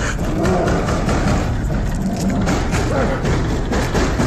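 Something inside a shed beating against its barred doors, a rapid, continuous banging and rattling, with a growling voice under it.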